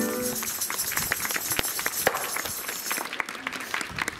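A marching band's brass and woodwinds hold a final chord that cuts off about half a second in. Scattered handclaps follow and thin out near the end.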